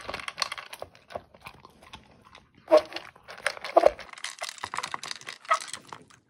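A dog eating dry kibble from a plastic slow-feeder bowl: irregular crunching and clicking as it chews and noses the pellets against the bowl's plastic ridges, with two louder bursts a little under halfway and about two-thirds of the way through.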